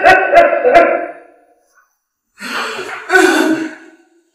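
A woman crying and wailing in distress, her sustained cry breaking into sharp sob catches during the first second. After a short pause, another wailing cry comes near the end.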